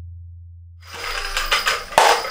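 A deep low boom fading out during the first second, then from about a second in, quick clicking rattles of furi-tsuzumi, small Japanese shaken pellet drums, being handled and shaken, with a sharp loud click near the end.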